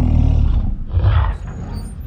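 Deep, rumbling growl of the giant ape Kong, a film sound effect, fading out about a second and a half in.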